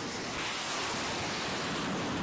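A steady rushing roar with no pitch to it, from the rocket boosters firing as the XQ-58A Valkyrie launches from its rail launcher. It swells slightly about half a second in.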